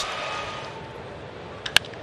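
Ballpark crowd noise dying down, then a sharp crack of a baseball bat meeting a pitch near the end.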